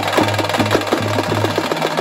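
Folk drum troupe playing stick-beaten barrel drums in a fast, steady rhythm of sharp strokes.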